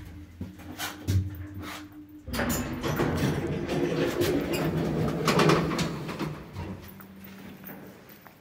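OTIS lift car coming to a stop with a steady hum and a clunk about a second in. Then the doors slide open with a loud rumble that lasts about four seconds and fades out near the end.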